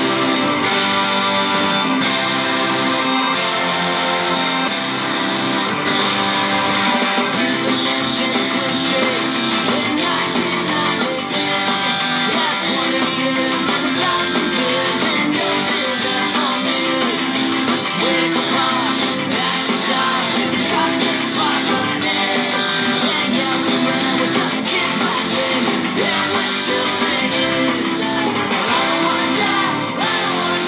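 Stratocaster-style electric guitar strummed in a punk-ska rhythm, played along with a full band recording of the song, steady and loud throughout.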